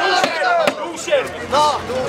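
Spectators shouting over one another, with a few sharp smacks of boxing gloves landing punches, the clearest about two-thirds of a second in.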